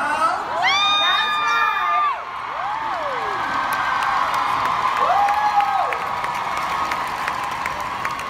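A large indoor audience cheering, with several high-pitched whoops rising above the crowd noise and scattered claps. The longest whoop comes about half a second in, and shorter ones follow around three and five seconds in.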